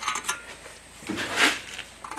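A steel tape measure handled over sheet-metal parts on a metal workbench: a few light metallic clicks, then a short scrape about a second in as the tape is repositioned across the hat channel.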